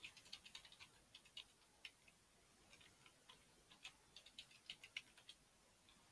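Faint computer keyboard typing: quick, irregular keystroke clicks in two runs, with a short pause a little after two seconds in.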